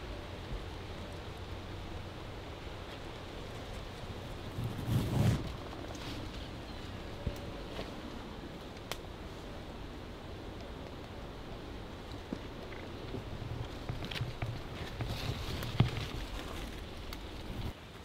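Outdoor woodland ambience: a steady soft hiss, with a louder rustle about five seconds in and a few faint clicks.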